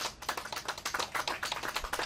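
A small group applauding, with many separate, irregular hand claps.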